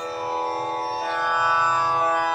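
Steady Indian classical drone, several held tones sounding together without a break.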